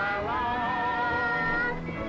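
Music with a singing voice holding one long, wavering note with vibrato that breaks off near the end.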